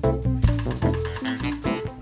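Live band playing an instrumental passage: Nord Electro 6 keyboard, electric guitar and bass guitar over a drum kit, with sharp drum hits marking the beat.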